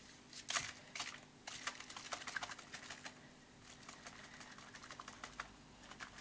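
A bottle of acrylic paint and water shaken by hand, giving a fast, irregular run of faint clicks and rattles as the thick paint is mixed into the water.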